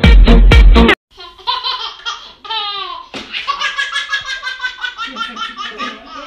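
Loud electronic dance music with a heavy bass beat for about the first second, cut off abruptly. Then a baby laughs, first in a few long falling laughs, then in a quick run of belly laughs at about four a second.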